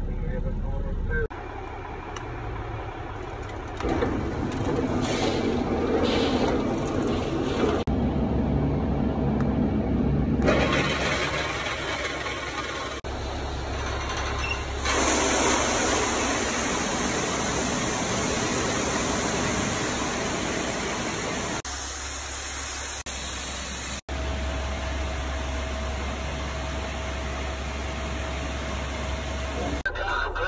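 A string of short cuts of vehicle and machinery noise, the sound changing abruptly several times: a truck engine running in some stretches, and a steady rushing noise in the middle, while corn runs down a spout into a steel bin.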